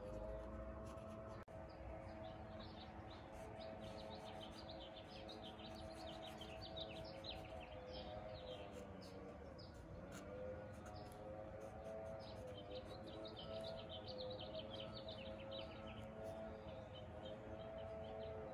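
Faint outdoor ambience: small birds chirping in quick, repeated notes, over a steady mechanical hum that wavers slightly in pitch.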